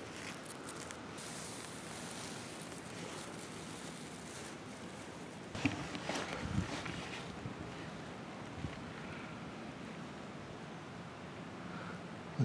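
Steady outdoor hiss of light wind in a forest, with a short spell of rustling and crunching steps through undergrowth about halfway through, and one more faint crunch a couple of seconds later.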